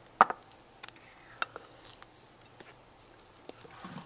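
A utensil clicking and tapping against a bowl while stiff ice cream is folded and swirled, in a few scattered light strokes with one sharper click about a quarter second in.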